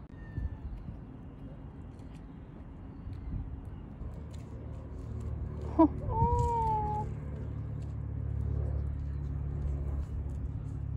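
Outdoor city ambience with a low rumble of road traffic that grows steadier partway through. About six seconds in there is a sharp knock, then a brief high-pitched call that falls slightly in pitch.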